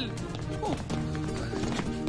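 Film background score: sustained notes over quick tapping percussion, with a brief vocal exclamation about two-thirds of a second in.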